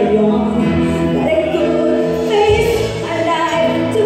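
A woman singing a Christian worship song live into a microphone, with band accompaniment including electric bass. She holds long, sustained notes.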